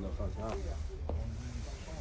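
Indistinct voices in a shop over a steady low hum, with a short click about a second in.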